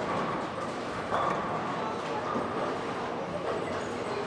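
Bowling alley din: a steady clatter of balls rolling and pins falling on the lanes, mixed with voices, getting suddenly louder about a second in.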